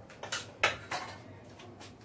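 A non-stick pan being set down on a gas stove, with three or four sharp metal clanks in the first second, the loudest a little after half a second.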